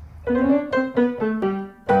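Piano music: a run of single notes stepping downward, about four a second, then a strong new note struck near the end.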